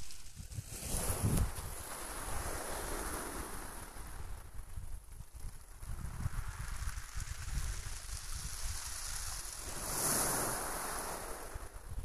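Small sea waves breaking and washing up the beach, with a bigger surge of surf about ten seconds in. Wind rumbles on the microphone underneath.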